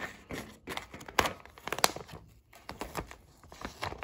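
Self-adhesive vinyl contact paper crinkling and rustling as it is handled, lifted and pressed onto a tree collar, with a few sharp crackles.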